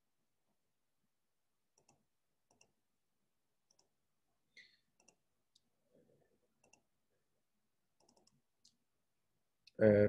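Near silence broken by faint, scattered clicks and taps, about a dozen spread over several seconds. A man's voice starts right at the end.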